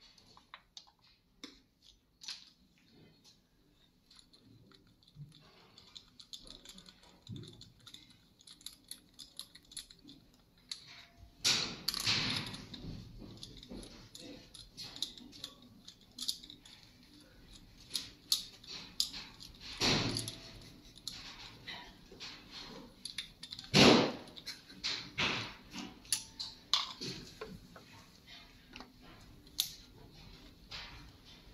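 Hand tools and compression-tester fittings clicking and clinking irregularly against the cylinder head of a bare diesel engine as the gauge is moved to the next cylinder, with a few louder scraping noises about twelve, twenty and twenty-four seconds in.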